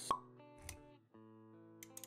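Intro music with sound effects. A sharp pop just after the start is the loudest event, then a short dull thud. The music nearly drops out about a second in, and held notes return with quick clicks near the end.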